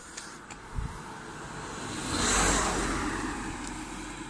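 A car passing close by on an asphalt road: its tyre and engine noise swell to a peak about two and a half seconds in, then fade as it drives away.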